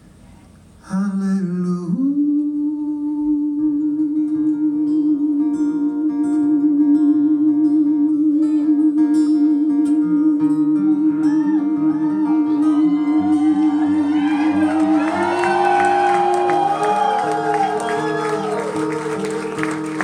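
A male rock singer holds one long note with vibrato for about thirteen seconds over strummed acoustic guitar chords, then climbs higher. Audience cheering swells in the last few seconds.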